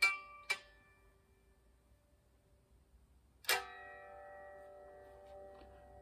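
Cigar box guitar played by hand: two plucked notes at the start die away, then after a pause of about three seconds one louder strum rings out and slowly fades.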